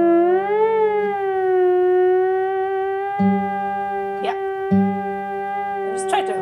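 Theremin holding a single note: the pitch glides up in the first second, overshoots a little and settles to a steady tone. Under it an acoustic guitar chord rings and is strummed again about three seconds in and near five seconds.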